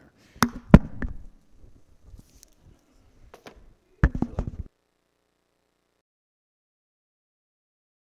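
Handling noise of a clip-on lapel microphone: a few sharp knocks and rubs in the first second, a cluster of knocks about four seconds in, then the sound cuts out to dead silence as the microphone drops out.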